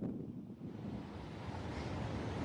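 Wind on the microphone over the wash of ocean surf: a steady, low noise that grows slightly louder near the end.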